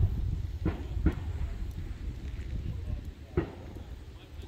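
Wind rumbling on the microphone, with a few faint short knocks about a second in and again near the end.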